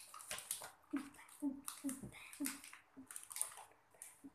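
Paper pages of a picture book being handled and turned, soft rustles and small clicks, with brief faint voice sounds from the child between them.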